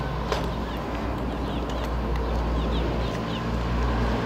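Steady low hum of a car engine idling, with small birds chirping faintly in short falling notes that come in little runs.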